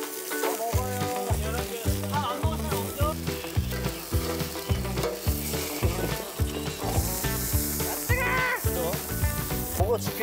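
Meat sizzling and spitting on a wire-mesh grill over high open flames. Background music with a steady beat comes in under it about a second in.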